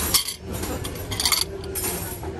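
A metal dessert cup and cutlery clinking against a china plate: a few light clinks, one near the start, one a little past a second in and one near the end.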